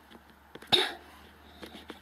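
A single short cough about three quarters of a second in, with a few faint clicks around it.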